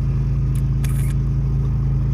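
Car engine idling steadily, heard from inside the cabin, with a short high hiss about a second in.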